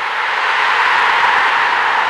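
Whoosh sound effect of the closing logo animation: a loud, even rush of noise that swells up and holds steady.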